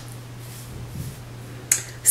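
Fingers working through short natural hair make a faint rustle over a steady low hum. One sharp click comes about a second and a half in.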